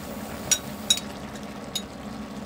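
Three light clinks, about half a second, one second and nearly two seconds in, over a steady low hum while a pot of stew cooks.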